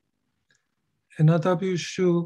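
Silence for about a second, then a presenter's voice starts speaking.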